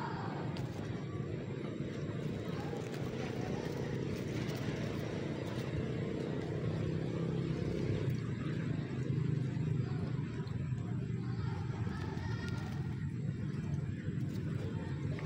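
A motor engine running steadily, a low hum that grows slightly louder about halfway through.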